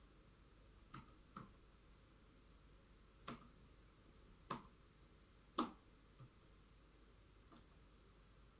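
European hornet working its mandibles at the wall's edge: about six faint, sharp clicks at irregular intervals over near silence, the loudest a little past the middle.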